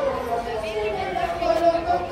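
Voices over soft band music, the bass of the music dropped away.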